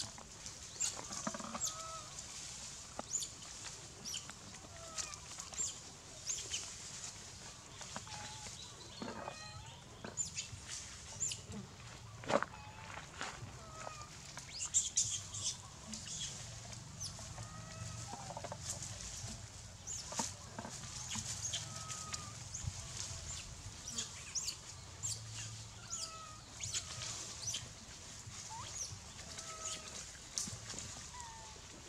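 Outdoor ambience of scattered short animal calls every few seconds, with many brief high chirps or clicks throughout and a faint low hum underneath.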